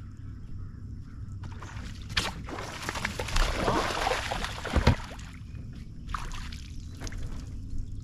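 Water splashing for about three seconds, loudest between three and five seconds in, as a bass takes a topwater frog and thrashes at the surface on the hookset, with a sharp thump about five seconds in.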